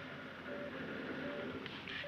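A pause in the dialogue: the faint steady hiss of an old film soundtrack, with two short faint tones about half a second and a second and a third in.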